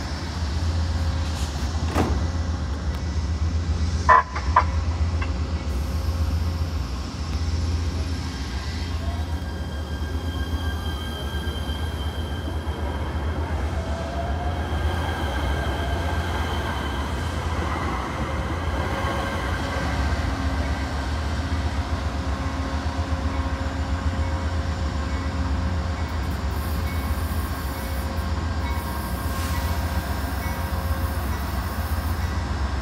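A Metro A Line light-rail train, a Kinkisharyo P3010 car, pulls away close by and runs off down the line. It makes a steady low rumble with a faint whine that rises and falls. There is a sharp knock about four seconds in.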